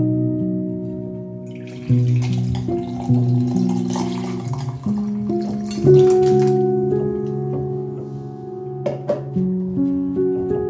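Gentle instrumental background music with held and plucked notes. Over it, sangria with fruit pieces splashes as it is poured from a glass pitcher into a wine glass, from about two to six and a half seconds in.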